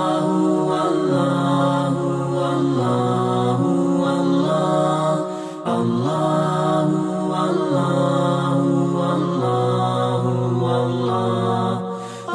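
Chant-like vocal music over the closing credits, a melody in long held notes with a short break about five and a half seconds in.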